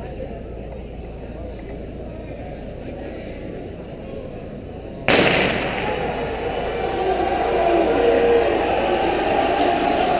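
A starter's pistol fires once about five seconds in, signalling the start of a race, its bang echoing through a gymnasium over crowd chatter. The crowd then cheers, growing louder toward the end.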